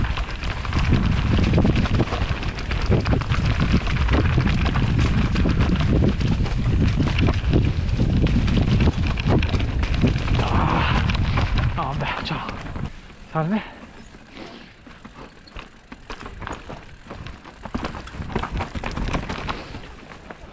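Steel hardtail mountain bike running fast down a rocky, leaf-covered trail: a dense rattle of tyres over stones and dry leaves, chain and frame clatter, and wind on the helmet microphone. About 13 seconds in it becomes much quieter as the bike slows, leaving scattered clicks and crunches.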